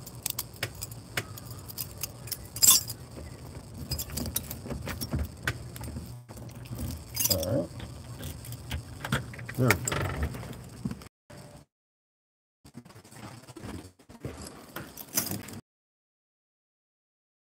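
A bunch of keys jangling, with a key clicking and scraping at a door lock as it is fumbled into the keyhole. After about eleven seconds the sound cuts out, with one short burst of clicks near the end.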